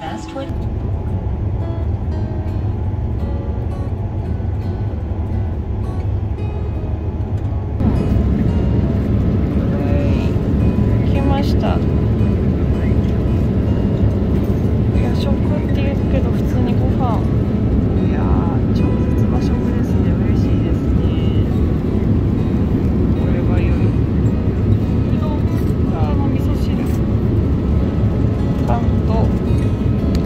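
Steady low rush of jet engines and airflow heard inside an airliner cabin in flight, stepping up louder about eight seconds in, with light clicks over it.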